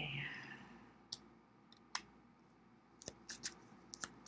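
Tarot cards being drawn off the deck and laid down on the table: single sharp card clicks about one and two seconds in, then a quick run of clicks near the end as several cards go down in a row.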